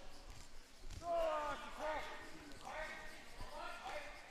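Curlers' voices calling out across the ice, a few short shouted calls with gaps between them, over the background hiss of the rink.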